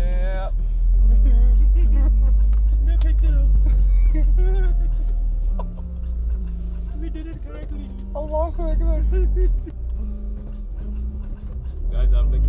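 Steady low rumble of a car driving, heard from inside the cabin, easing slightly about halfway through. Over it there is music with a wavering, singing-like voice.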